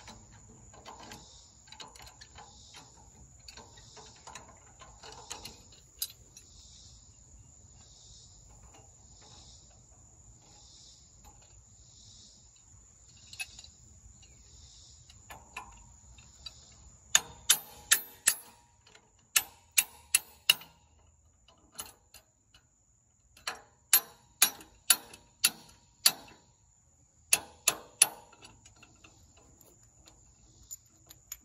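Sharp metallic clicks in runs of three to six, about half a second apart, from the lift rod and hitch parts of a compact tractor's three-point hitch being fitted by hand, mostly in the second half. Behind them insects call steadily, in even high-pitched pulses about once a second.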